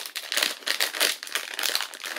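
Clear plastic packaging of chocolate peanut butter cups crinkling and crackling irregularly as it is handled.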